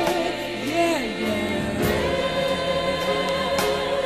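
High school gospel choir singing: a single voice slides through a run of notes, then from about halfway the voices hold a long chord.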